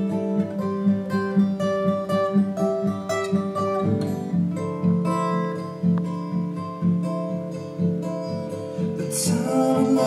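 Acoustic guitar played in a steady plucked and strummed pattern, its chord shifting lower about four seconds in. The player worries it may be a little out of tune.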